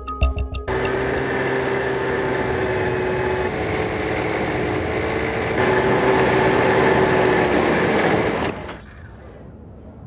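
Snowmobile engine running under way, a steady whine over a rushing noise, its pitch stepping slightly a couple of times. Near the end it falls away to a much quieter sound.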